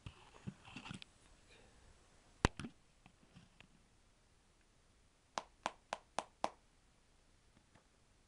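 Sharp taps from a Red Seal long cut mint snuff tin being handled: one loud tap, then a quick run of five taps, about four a second.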